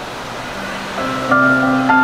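Instrumental backing music of a song with no voice over it: a soft wash that moves into held chords about a second in, growing louder.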